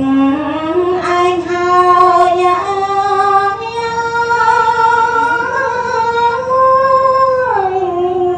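A woman chanting Khmer smot in the mourning (tumnuonh) style, solo unaccompanied voice. She holds long drawn-out notes that climb in slow steps, sustains one high note for several seconds, then slides down near the end.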